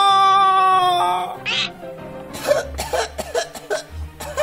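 A cartoon character's voice holds a drawn-out groan of pain that falls slightly and stops about a second in. It is followed by a short breathy burst, then quieter comic background music with low bass notes.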